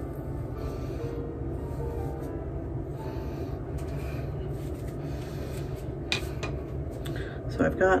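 A steady low hum of room noise, with faint scratching of a comb drawn through hair as it is parted and a short click about six seconds in.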